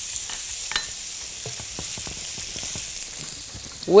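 Minced garlic sizzling steadily in hot olive oil in a frying pan, with faint taps of a spatula stirring it.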